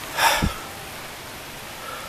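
A short, sharp breath from a man, a huff or sniff, about a quarter second in, then a steady background hiss.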